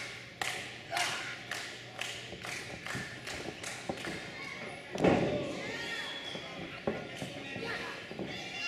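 Pro wrestling ring action: sharp smacks about two a second, then one loud, heavy thud about five seconds in as a body hits the ring, with crowd voices calling out.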